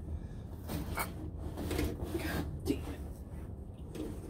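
Scattered scuffs, rubs and knocks of a person shifting about on the ground under a motorhome, over a low steady hum.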